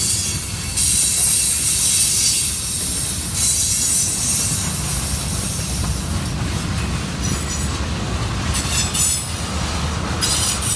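Freight cars, covered hoppers then tank cars, rolling past close by with a steady low rumble of wheels on rail. High-pitched wheel squeal comes and goes in several stretches, strongest in the first few seconds and again near the end.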